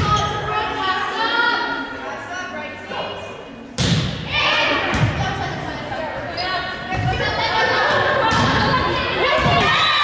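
Volleyball being struck during a rally in a gymnasium: a sharp hit about four seconds in, likely the serve, then several more hits roughly every one to two seconds, ringing in the large hall. Players' and spectators' high voices call and shout throughout.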